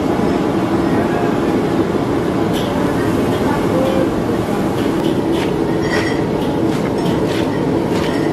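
Steady, loud rumbling background noise with faint voices, and a few sharp clicks in the second half.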